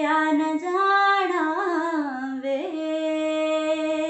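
A woman singing a Punjabi tappa unaccompanied, drawing out one long vowel without words: the pitch rises and wavers in ornaments about a second in, dips briefly past the middle, then settles on a steady held note.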